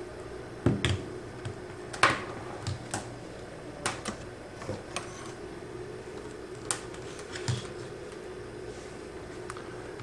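Scattered light clicks and taps of multimeter test leads being handled, their plastic probes and plugs knocking lightly against each other and the desk, about ten in all, the loudest about two seconds in. A faint steady hum lies under them.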